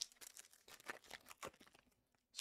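Faint crinkling and light clicking of foil trading-card pack wrappers being handled, in scattered small bursts.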